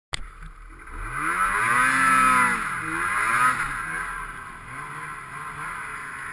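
Ski-Doo snowmobile's 600 two-stroke engine revving hard in deep powder. It climbs in pitch about a second in and holds high, dips, revs up again, then eases off to a lower, steadier pitch.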